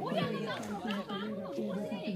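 Several people chattering at once, their words indistinct.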